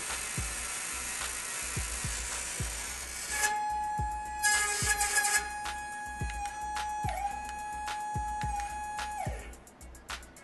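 Tiny DC can motor from a toy coaxial helicopter, still driven by the toy's own circuit board and battery, running with a steady whine. The pitch dips briefly and then falls away as the motor stops near the end.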